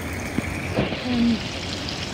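Garden pond fountain trickling steadily: an even wash of running water behind the speech.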